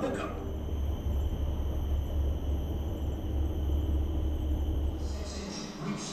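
Recorded Battle of Singapore sound effects played through an exhibit's loudspeakers: a steady deep rumble that stops about five seconds in.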